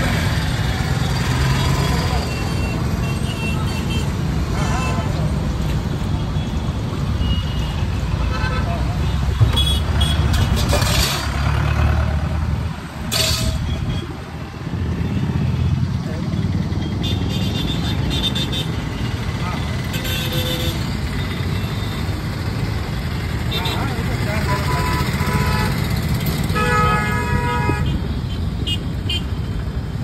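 Roadside traffic: a steady rumble of vehicle engines with vehicle horns honking several times, including a longer honk near the end. Voices are heard in the background.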